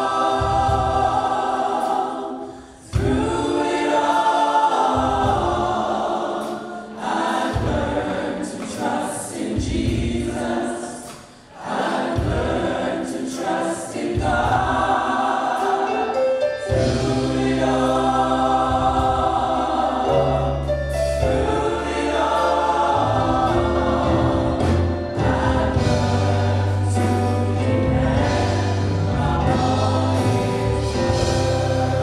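Women's vocal ensemble singing a gospel song in harmony, with organ accompaniment. The voices pause briefly twice, and a low bass part comes in about halfway through.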